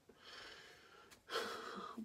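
A quiet pause, then a man breathing in audibly in the second half, just before he speaks.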